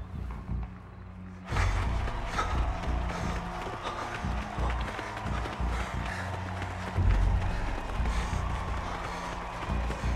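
Film score music with low sustained notes; about a second and a half in, a dense wash of stadium crowd noise and runners' footfalls comes in suddenly under the music.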